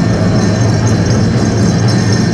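Powwow drum beaten at a fast, steady pace for a fancy dance song, with a strong low rumble filling the hall and dancers' bells jingling over it.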